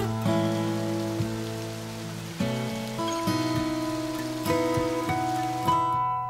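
Acoustic guitar music, notes plucked about once a second and left ringing, over the steady rush of water from a creek cascade.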